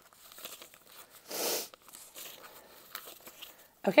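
Paper banknotes and binder pages rustling as cash is pulled out of a cash-envelope binder: soft, scattered rustles with one louder rustle about a second and a half in.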